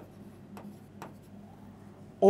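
Faint pen strokes and light taps on a touchscreen board while writing, with two small clicks about half a second apart over a low steady hum.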